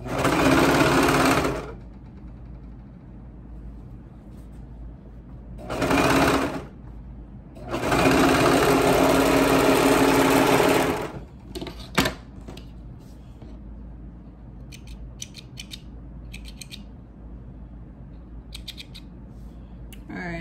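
Serger (overlock sewing machine) running in three bursts: about two seconds, a short one, then about three seconds, as a seam is finished off. A single sharp click follows about a second after the machine stops, then a few faint ticks near the end.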